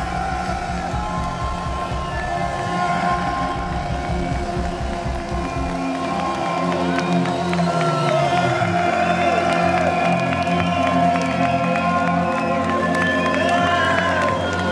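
Live band music at the close of a song: a pulsing low beat stops about six seconds in, leaving held tones ringing on while the crowd cheers, whoops and whistles.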